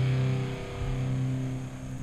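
The closing chord of a rock song with electric guitar, played back from a music video, holding steady and fading away as the song ends.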